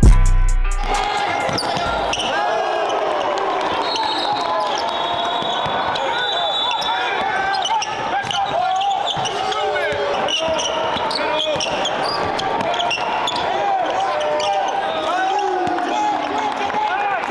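Sound of a basketball game in a gym: a ball bouncing on the hardwood, many short sneaker squeaks, and indistinct voices of players and onlookers. A short tail of music fades out in the first second.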